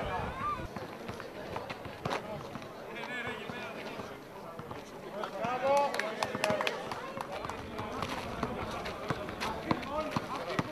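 Sounds of a basketball game: scattered knocks of the ball bouncing and players moving on the court, with people's voices calling out, loudest a little past the middle.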